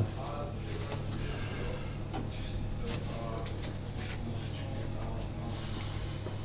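Indistinct background voices over a steady low hum, with a few light knocks.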